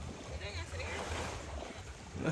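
Quiet shoreline ambience: a steady low rumble with faint far-off voices.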